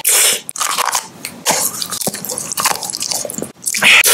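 Close-miked biting and crunchy chewing of a snack, with a loud crunch at the start and another just before the end, and softer irregular chewing crackles between.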